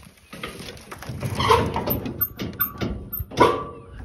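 Metal chain-link gate being handled, rattling and knocking, with a loud metal clank about three and a half seconds in that rings briefly.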